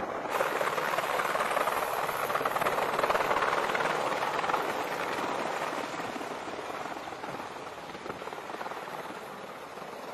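Helicopter flying low overhead, rotor and engine noise loudest in the first few seconds, then slowly fading as it moves away.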